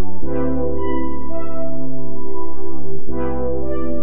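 Chilled-out synth line: sustained synth chords over a held bass note, with a new chord starting about a quarter-second in and another about three seconds in.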